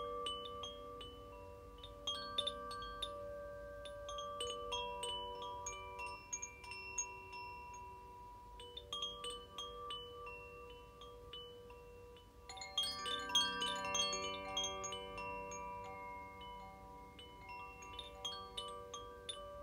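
Wind chimes ringing in random, unhurried strikes, their notes overlapping and ringing on. A busier flurry of strikes comes about two thirds of the way through and is the loudest part.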